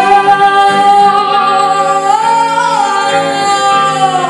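A woman singing one long, high, held note over guitar accompaniment. The note lifts slightly about two seconds in, then settles back.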